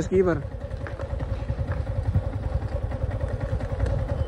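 Motorcycle engine idling, a low steady rumble, after a brief trailing word at the start.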